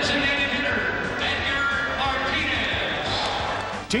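A man laughing, with voices and stadium crowd noise around him and background music underneath.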